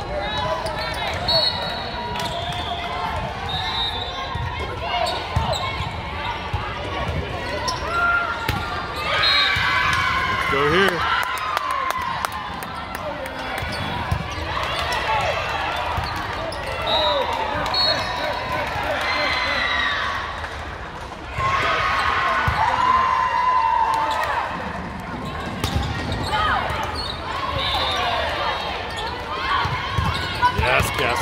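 Volleyball play in a large sports hall: balls being hit and bouncing on the court amid the chatter and calls of players and spectators.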